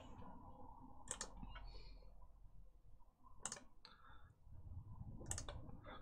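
Four faint computer mouse clicks spread over a few seconds, a second or two apart, over quiet room tone.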